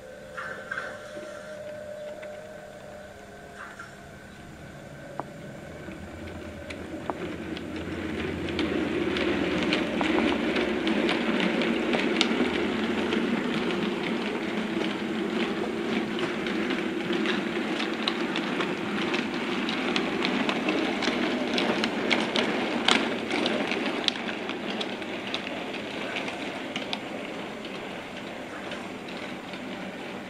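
Model train running along the layout's track: the wheels rumble and click over the rail joints. It grows louder over the first ten seconds, then gradually fades as the train moves away.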